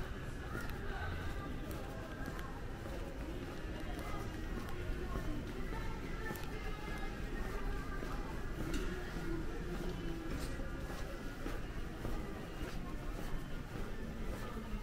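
Background music and indistinct voices in a long, hard-walled airport corridor, with scattered footsteps.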